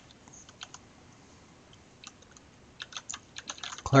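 Computer keyboard being typed on: a few scattered keystrokes in the first second, then a quick run of keystrokes near the end as a word is typed.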